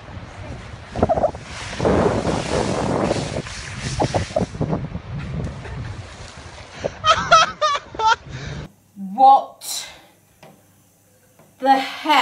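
A long rushing noise for the first few seconds, then bursts of high, warbling laughter, cut off suddenly and followed by short bursts of voices near the end.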